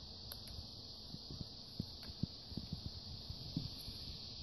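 Faint handling noise: a scatter of soft taps and clicks over a steady hiss.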